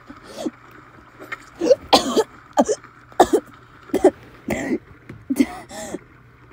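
A woman coughing and gasping in a dozen or so short, uneven bursts over a faint steady background ambience.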